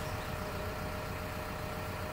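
A steady low rumble, like an engine idling, with a faint thin steady hum above it.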